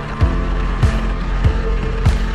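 Background music with a steady, deep drum beat, a little under two beats a second, over sustained held tones.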